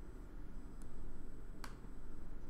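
Computer mouse clicks: a faint one a little under a second in and a sharper, louder one near the end, as the course drop-down menu is opened. Low room hum underneath.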